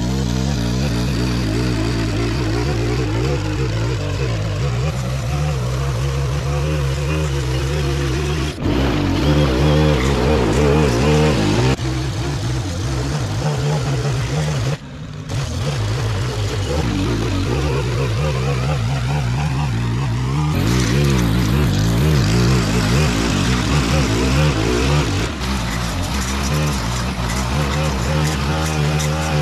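Gas-powered stick edger running at working throttle, its blade cutting along the edge of a concrete sidewalk. The engine note is steady, and the sound changes abruptly a few times.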